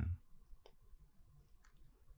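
A pause between spoken words: the last of a voice fades out just after the start, then a quiet room with a few faint small clicks.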